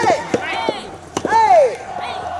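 Soft tennis rally: the soft rubber ball struck by rackets and bouncing on the court makes several sharp pops, between loud shouts from the players that arch up and down in pitch.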